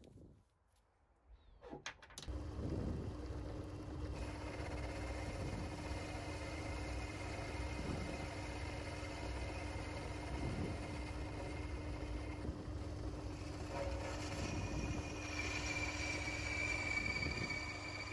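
A small belt-driven metal lathe switched on with a click about two seconds in, then running steadily with a constant hum. Near the end a higher whine grows louder as the tool cuts the workpiece.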